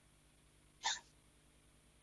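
Near silence, broken once a little under a second in by a single brief, short noise.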